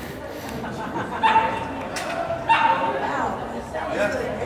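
A dog barking twice in short, pitched barks as it runs an agility course, with chatter echoing in a large hall behind.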